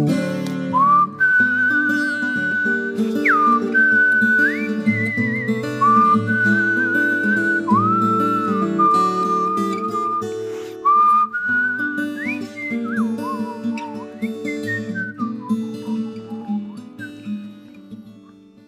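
A man whistling a melody with vibrato and sliding notes over a plucked ten-string viola caipira accompaniment, the instrumental close of the song. The playing grows quieter and fades out near the end.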